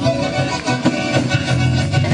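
Traditional folk dance music with a fiddle-like bowed string lead over a steady beat, played for a line of dancers.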